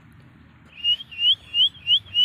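A person whistling a run of short, rising notes, about four of them starting near the middle, calling a pet pigeon back.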